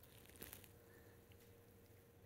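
Near silence: room tone with a faint steady hum and one faint click about half a second in.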